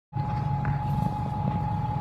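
Steady drone of a moving passenger vehicle heard from inside the cabin: a low engine hum with a thin, steady high-pitched whine above it.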